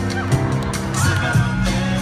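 Amplified cat meows played over backing music through a large arena sound system.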